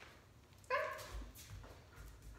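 A dog gives one short, high bark about a second in, followed by a few soft low thumps.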